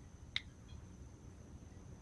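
A single short, sharp click from an iPhone as a key on its on-screen keyboard is tapped, about a third of a second in.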